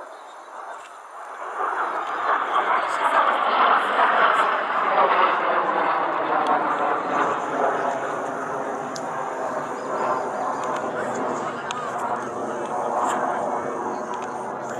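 Display aircraft flying overhead at an airshow: engine noise swells about two seconds in and stays loud. People are talking close by.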